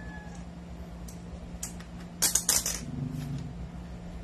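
Plastic airsoft BBs pushed from a loading stick into an M4 rifle magazine: a few sharp clicks, then a quick run of clicks about halfway through as the rounds feed in.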